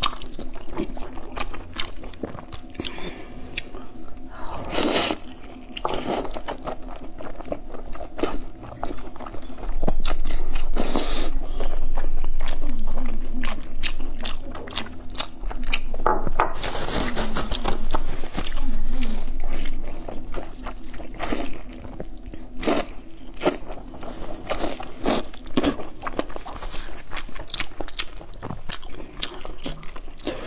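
Close-miked chewing and wet mouth sounds of someone eating braised intestine rolls: many quick smacks and clicks, with louder stretches of chewing about a third and halfway through.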